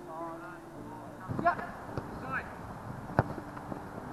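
Footballers shouting to each other in short rising calls on an outdoor artificial pitch, with one sharp thud of a ball being kicked about three seconds in. A little background music fades out in the first second.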